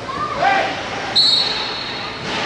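A referee's whistle blown once, a single steady high note of under a second that starts a little past the middle, after shouts from players on the pitch.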